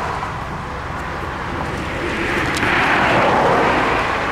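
Road traffic: a passing vehicle's noise swells about halfway through and holds.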